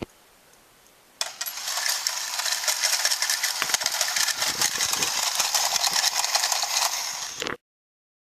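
Coin-eating dog bank toy working: a click as the coin is set on its plate, then about a second in its small motor and plastic gears start a dense whirring rattle that runs for about six seconds as the dog bends down and takes the coin, cutting off suddenly near the end.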